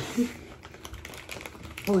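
A crunchy corn tortilla chip being chewed close to the microphone: a quick, irregular run of small crisp crunches.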